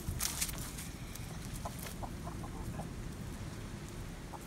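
A brown hen clucking, a quick run of short clucks about halfway through.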